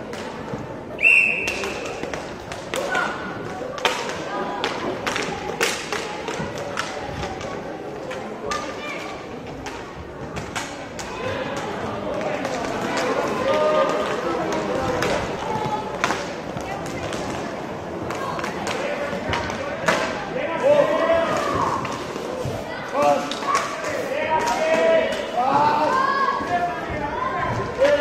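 Inline hockey play: many sharp clacks of sticks striking the puck and the boards, with spectators' voices calling out, busier in the second half. A short whistle blast about a second in.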